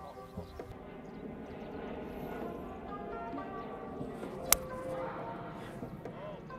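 A 5-iron striking a golf ball: a single sharp click about four and a half seconds in, over background music.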